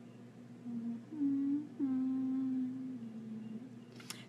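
A woman humming a few notes with her mouth closed, each note held steady and stepping up and down in pitch, the longest held for about a second.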